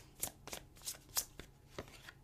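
A tarot deck being shuffled by hand: a string of light, irregular card clicks, about half a dozen in two seconds.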